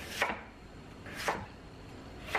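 Chef's knife cutting through chunks of white radish (daikon) and striking an end-grain wooden cutting board: two short chops about a second apart.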